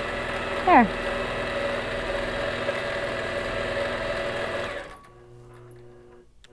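Longarm quilting machine stitching steadily during free-motion quilting, then stopping about five seconds in, leaving a faint hum.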